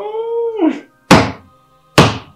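A short wavering pitched tone, then two sharp smacks about a second apart, the second louder.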